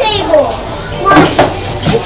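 Children's voices: unclear child chatter and play sounds.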